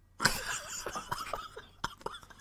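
A man laughing hard: a sudden breathy outburst about a quarter second in, then a run of short, broken gasps of laughter. There is a sharp click near the end.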